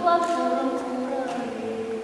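A woman singing a cappella, a slow unaccompanied song with notes drawn out in a reverberant church, moving into a long held note near the end.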